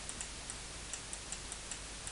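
Faint, irregular computer mouse clicks as letters are drawn by hand, over a steady low hum and hiss.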